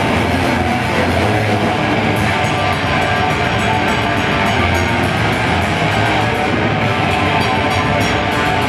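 Live black metal band playing: a loud, dense wall of distorted guitars, bass and drums with no letup. From about two seconds in, a fast, even run of drum and cymbal hits comes through on top.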